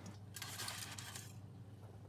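Faint room tone: a low steady hum with a soft hiss over the first second or so.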